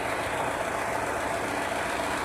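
Needle loom for elastic tape running at speed, a steady, even mechanical clatter.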